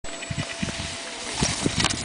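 Wind rumbling on the microphone with several soft thumps and knocks, a few of them closer together in the second half.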